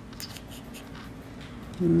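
Faint scratchy rustling of fingers handling a small paper-backed water-decal sheet. A short hummed "hmm" comes in near the end.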